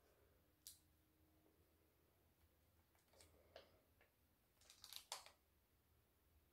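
Near silence with a few faint soft clicks and rustles of a damp sheet mask being handled against the face: one about a second in, a couple more midway, and a short cluster near the end as the mask is lifted away.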